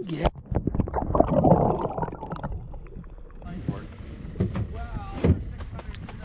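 Water splashing and sloshing around the hands as a large rainbow trout held at the surface of a shallow river is let go, loudest in the first two seconds and then settling.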